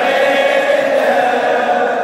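Male voices singing a Shia mourning chant (latmiya), a steady unbroken chant.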